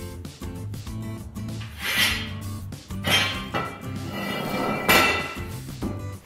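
Background music, with three sharp metallic knocks and clinks about two, three and five seconds in, as a hand conduit bender and a length of half-inch EMT conduit are handled and set down on the floor.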